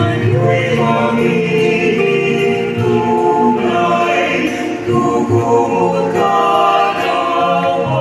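Small church choir of male and female voices singing a hymn together in parts, with sustained, held notes.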